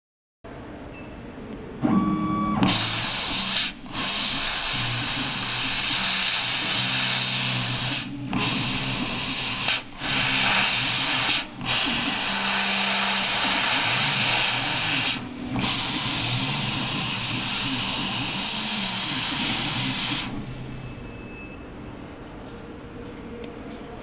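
CO2 laser cutter cutting plywood: a steady hiss of air blowing through the cutting nozzle, with the low hum of the head's drive motors under it. The hiss starts a couple of seconds in after a short tone, breaks off briefly five times as the laser moves between shapes, and stops about two seconds before the end.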